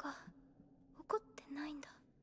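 Only speech: a voice speaking softly, close to a whisper, in Japanese.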